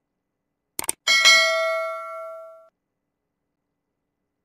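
Subscribe-button animation sound effect: a quick double click, then a bell ding with a clear pitched ring that fades out over about a second and a half.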